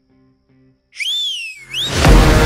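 A loud whistle about a second in: the pitch rises, glides slowly down, then swoops sharply up again, over faint sustained background music.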